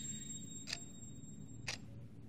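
A wall clock ticking faintly, one tick each second, over a low steady room hum.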